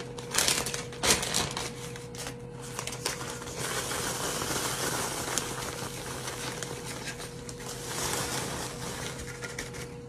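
A zip-top plastic bag crinkling as it is opened and held. Then a crumb topping pours and is shaken from an enamel bowl into the bag, a steady rustling hiss of crumbs sliding onto the plastic.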